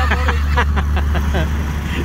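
Steady low rumble of a car driving along, heard from inside the moving car, with voices talking over it.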